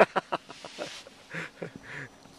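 A man's laughter trailing off in a few short, breathy bursts, with a sharp click at the very start.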